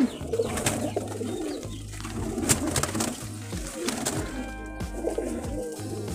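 Domestic pigeons cooing in a loft, a low, steady murmur of overlapping coos, with a couple of brief sharp clicks.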